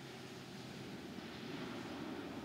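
Steady background hum and hiss of room tone, with no distinct sound event.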